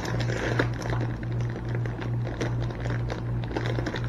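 Plastic produce bag crinkling in irregular small clicks as grapes are pulled out of it, over a steady low hum.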